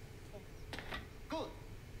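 Quiet speech: one word, "Good", with a couple of sharp clicks just before it.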